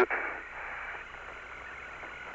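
Steady hiss of the Apollo air-to-ground radio voice link between transmissions, with a faint steady tone running through it.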